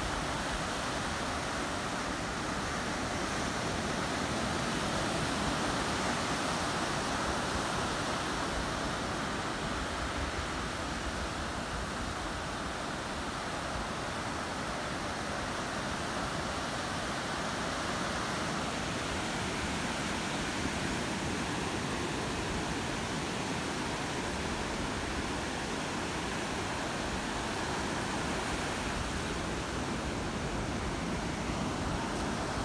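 Ocean surf breaking and washing up a sandy beach: a steady rush of waves that swells and eases slowly.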